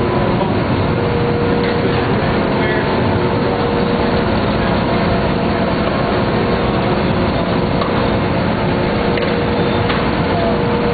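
Steady machinery din in a coal-fired boiler house, constant and unbroken, with a couple of faint steady hums running through it.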